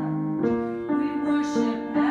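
Piano playing a choral accompaniment, with a new note or chord about every half second.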